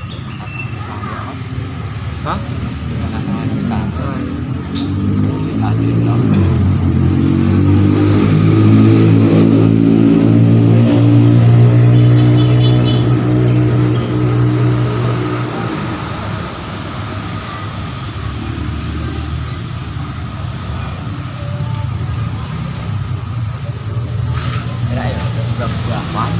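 A motor vehicle engine running close by, swelling in pitch and loudness from about five seconds in, holding for several seconds, then falling away around sixteen seconds, over a steady workshop hum.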